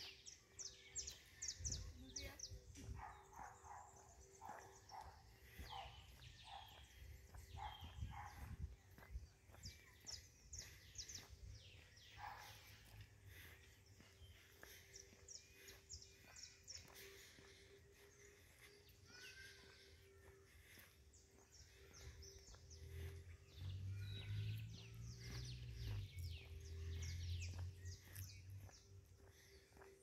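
Faint chirping and twittering of many small birds, with a steady low hum underneath and a low rumble rising in the last few seconds.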